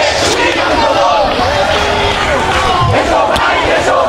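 A marching crowd of protesters shouting slogans together, many voices at once, loud and unbroken.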